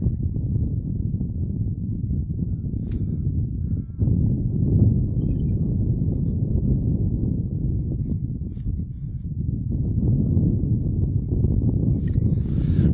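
Steady, low wind rumble buffeting the microphone, dipping briefly about four seconds in.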